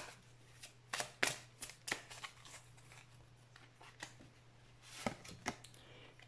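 A deck of oracle cards being shuffled by hand: irregular light flicks and slaps of the cards, thick in the first couple of seconds, thinning out in the middle and picking up again near the end.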